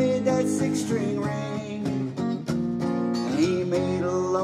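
Acoustic guitar strummed steadily through the chords, with a man's singing voice carrying a held, bending note over it.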